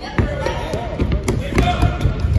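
Soccer ball kicked and bouncing on a hardwood gym floor, a couple of sharp knocks over the noise of players running, with voices calling out in a large gym hall.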